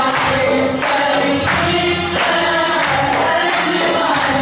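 A group of people singing together, with hand clapping keeping the beat.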